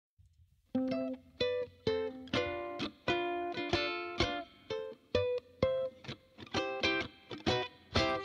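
Solo ukulele starting after a short silence, strumming chords one by one. Each chord rings briefly and is stopped, with short gaps between them.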